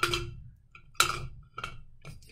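Knocks and clinks of a battery tea light against a glass mason jar as it is dropped in and lands upside down. There are two sharp knocks, one at the start and one about a second in, then two fainter ones near the end, each with a short glassy ring.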